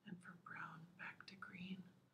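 Only speech: a woman reading aloud from a book in a soft, quiet voice.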